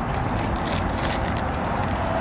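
Crinkling and crackling of a freeze-dried astronaut ice cream wrapper being peeled open by hand, with a cluster of crackles in the first second, over a steady low rumble.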